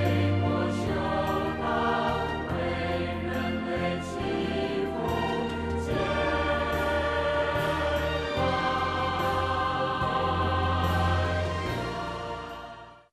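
Closing music: a choir singing over sustained instrumental accompaniment with a steady bass.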